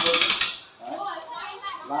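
Two-speed hand-crank cable winch being cranked, its ratchet pawl clicking rapidly over the gear teeth; the clicking stops about half a second in.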